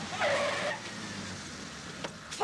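Car tyres screeching briefly as the car brakes hard to a stop, with its engine running low underneath.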